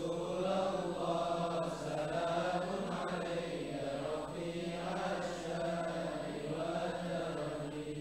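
Men's voices chanting an Arabic sholawat refrain together, slow and unaccompanied, held in long wavering lines and quieter than the solo verses around it.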